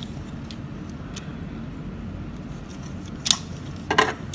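Plastic parts of a transformable action figure clicking and knocking as they are handled and moved into place, with a sharp click about three seconds in and another near the end, over steady room noise.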